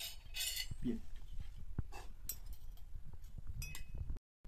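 Metal spoons and forks clinking and scraping against ceramic dishes at a dinner table, in a run of scattered short clinks. A brief low murmur comes about a second in.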